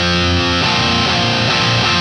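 Distorted Jackson electric guitar in drop D tuning ringing a suspended chord shape: an 8th-fret power chord with the 10th fret on the fourth string. A new chord is struck about half a second in and held.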